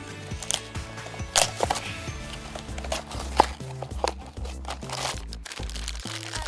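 Background music with held bass notes, over which a small cardboard blind box and the black foil bag inside it are torn open and crinkled by hand. The crackles come in several sharp bursts, the loudest about a second and a half and three and a half seconds in.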